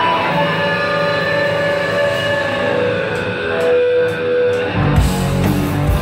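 A live rock band starting a song. Electric guitars ring out alone at first, and about five seconds in the drums and bass come in with the full band.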